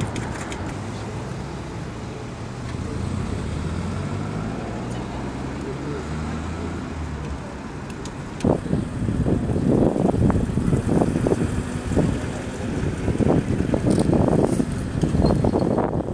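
A vehicle engine idling with a steady low hum, which stops about seven seconds in; from about eight and a half seconds louder, irregular low rumbling noise takes over.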